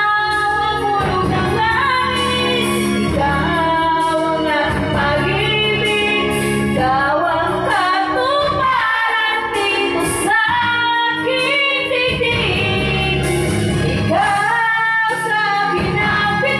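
A woman singing karaoke into a microphone over a music backing track, in sung phrases.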